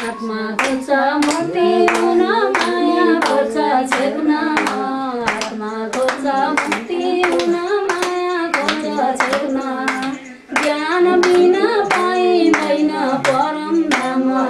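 People singing a Hindu devotional song (bhajan) to steady hand-clapping, about two claps a second. The singing and clapping break off briefly about ten seconds in, then carry on.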